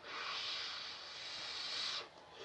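A long breath drawn through a small glass pipe: one steady airy hiss lasting about two seconds.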